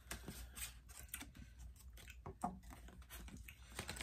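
Faint, scattered clicks and crackles of a clear plastic clamshell container being handled as fingers pick out sticky chili-coated gummy bears.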